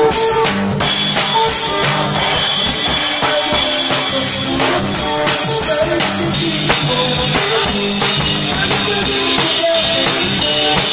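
A drum kit played live, bass drum and snare keeping a steady beat, along with a backing song from a loudspeaker.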